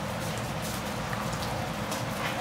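Steady rain falling, a continuous even hiss with scattered fine drips.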